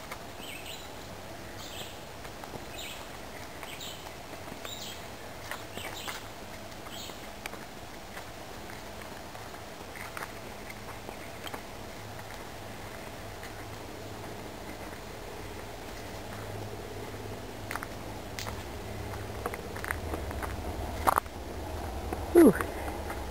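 Footsteps on a dirt forest trail at a steady walking pace, with birds chirping in the surrounding woods during the first several seconds. A low rumble builds near the end, and a sharp knock about a second before the end is the loudest sound.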